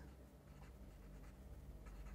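Faint scratching strokes of a felt-tip marker writing on paper.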